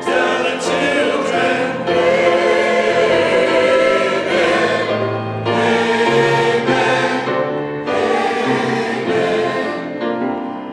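Mixed church choir of men's and women's voices singing long held notes in several phrases.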